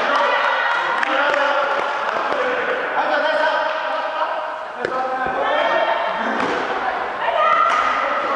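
Badminton rally: a few sharp clicks of rackets striking the shuttlecock, over steady chatter and calls from people's voices in the hall.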